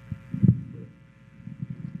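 Low thumps on a table microphone, the loudest about half a second in, then a run of small low knocks near the end, over a steady electrical hum from the sound system.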